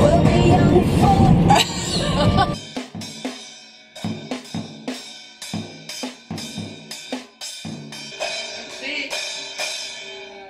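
Loud music with voices for the first two and a half seconds, then a First Act children's drum kit struck with drumsticks: uneven drum hits about twice a second, each with a ringing cymbal.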